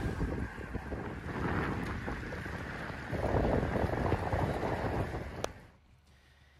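Wind buffeting the microphone of a camera moving along a road, over a low rumble of road noise. There is a single sharp click near the end, and then the sound drops away suddenly.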